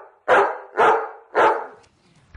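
A dog barking: three loud barks about half a second apart.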